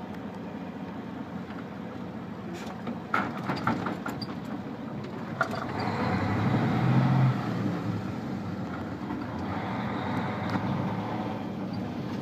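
Engine and road noise of a vehicle driving slowly, heard from inside the cabin, a steady low hum that swells louder about six to seven seconds in. A few light clicks come about three seconds in.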